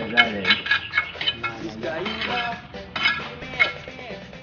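A hammer striking a steel chisel against a concrete tomb wall: a quick, irregular run of sharp metallic clinks, each ringing briefly, as the niche is chipped open.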